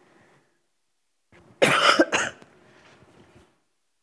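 A person coughing: one short double cough about a second and a half in, loud and harsh.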